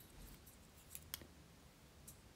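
Near silence with a few faint clicks, two close together about a second in: a thin bamboo skewer being twisted and pushed through a small balsa nose block.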